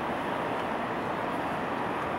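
Steady road and engine noise of a car driving slowly, heard from inside the cabin.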